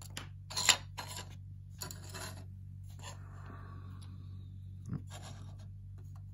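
Handling noises on a cutting mat: a few short scrapes and light knocks as model railway platform pieces and a card building mock-up are slid into place and set down, over a steady low hum.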